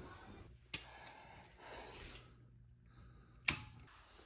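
Faint footsteps and handling noise, then a single sharp click about three and a half seconds in as a plug-in receptacle tester is pushed into a wall outlet.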